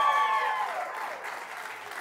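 Live audience applauding and cheering, dying down over the second half.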